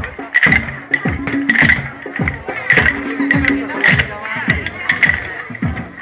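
A group of children beating a steady rhythm with percussion sticks, a little under two strikes a second, with voices over the beat.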